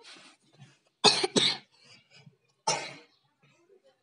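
A child coughing: a quick double cough about a second in, then a single cough near three seconds.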